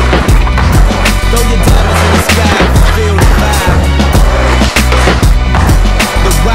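Hip hop music with a heavy bass beat, over which a skateboard's trucks grind along a wooden bench and its wheels roll on concrete.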